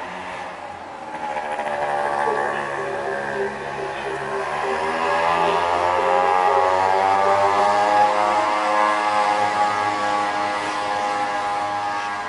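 A motor vehicle's engine running, its pitch dipping and then rising as it speeds up from about four seconds in, and growing louder.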